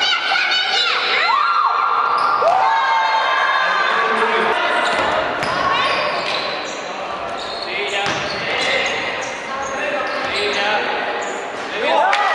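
Live basketball game sound echoing in a gym: a ball bouncing on the hardwood floor, sneakers squeaking, and players' voices.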